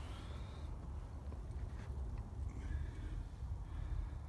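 A low steady rumble with a few faint knocks and clicks about halfway through, the sound of a handheld phone being moved about. No power tool is running.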